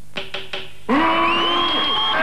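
Three quick taps of a conductor's baton on a music stand, then, about a second in, a loud jumble of orchestral instruments starts up, with sliding, clashing tones: a comic orchestra striking up in a cartoon gag.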